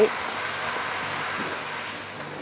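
Risotto rice and onion sizzling in a hot pan just after white wine has been poured in, stirred with a wooden spoon: a steady hiss as the wine cooks off and evaporates.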